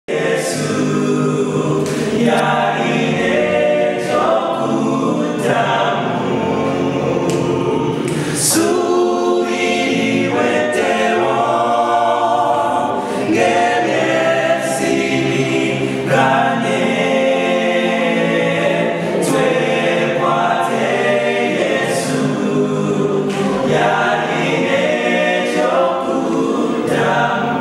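A cappella vocal group singing a gospel song in multi-part harmony, voices only with no instruments, at a steady, full level throughout.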